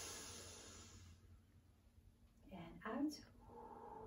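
A woman drawing one deep breath in, a breathy rush lasting about a second and a half, as part of a yoga breathing exercise. A brief bit of her voice follows near three seconds.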